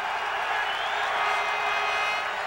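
Football stadium crowd, a steady din of many voices.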